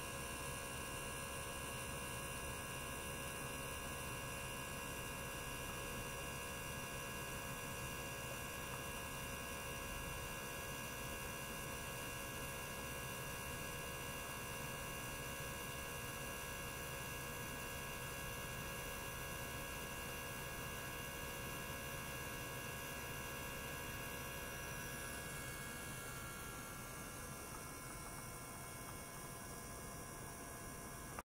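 Steady electrical hum with several fixed high tones over a faint hiss, from an ultrasonic bath and probe setup running with a small circulation pump.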